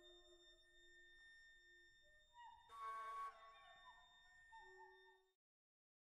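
Faint background music of sustained electronic-sounding tones with slow glides. A brief burst of noise about three seconds in is the loudest moment, and the music cuts off suddenly a little after five seconds.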